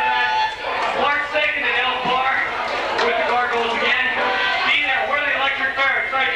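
Loud shouted vocals over a live punk band, with no break.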